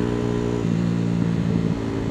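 Motorcycle engine running steadily while riding at a constant speed, a continuous drone of even pitch under road noise.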